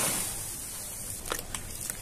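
Dry red dirt powder pouring off a plastic container into a tub of water, its hiss tailing off within the first half second. Three light clicks follow in the second half.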